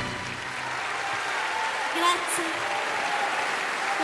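Audience applauding as the song ends, with a few voices calling out over the clapping about halfway through.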